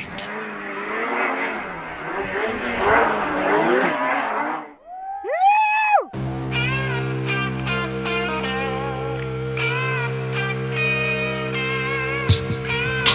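Snowmobile engine running and revving, its pitch wavering, over a rushing hiss for about four seconds. A brief whine rises and falls just before six seconds in, then music with long held notes and a steady bass takes over.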